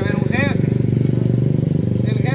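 An engine idling steadily close by, a low hum with a fast, even pulse that does not change, under a brief bit of speech at the start.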